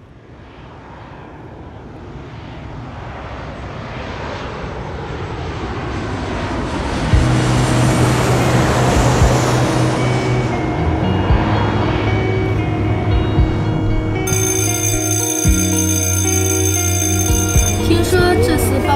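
A twin-engine jet airliner passing low overhead with its landing gear down: its roar grows steadily from quiet and peaks about nine seconds in. Music comes in about seven seconds in with sustained bass notes, and a layer of high sustained tones joins near the end.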